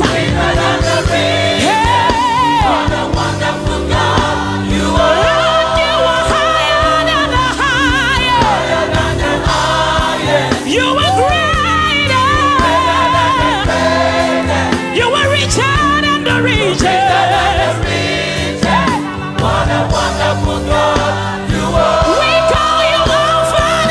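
A large gospel church choir singing a praise song with a lead vocalist over instrumental accompaniment, the lead voice wavering in long held, ornamented notes.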